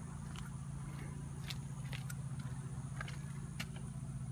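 A steady low hum with a few light clicks scattered through it, about five in four seconds.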